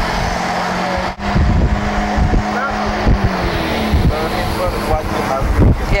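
Steady running noise of a moving car heard from inside, with a low engine hum that drops in pitch about three seconds in, a few low bumps, and faint voices from the street.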